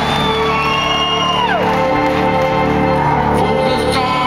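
Live organ holding steady sustained chords, with audience members whooping and a whistle from the crowd that falls in pitch about a second and a half in.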